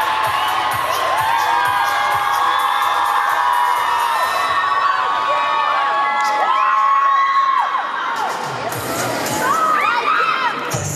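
Audience cheering and screaming, many high-pitched shrieks and whoops overlapping, easing off slightly near the end.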